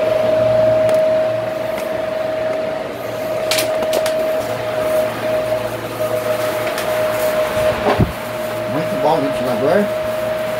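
Philco PVC491PA ten-blade electric fan running, a steady motor hum with a high tone over it. A few clicks and knocks come in the middle as the fan is handled and moved.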